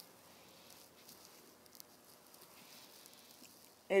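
Faint, soft brushing of a foundation brush's bristles buffing cream foundation over skin, with a small tick about two seconds in.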